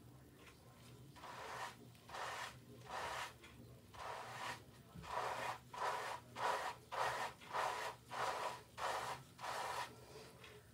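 A wave brush's bristles scrubbing through shampoo-lathered hair in repeated rasping strokes, about a dozen, quickening to about two a second in the second half.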